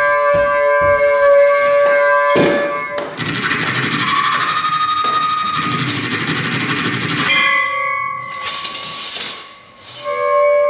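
Free improvised music: held saxophone tones over scattered percussive knocks, giving way about three seconds in to a dense noisy wash that lasts some four seconds, then a few held tones, a short noisy burst and a brief drop in level just before the end.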